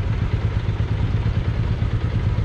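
Single-cylinder motorcycle engine running at low revs as the bike rolls slowly, its exhaust beat pulsing rapidly.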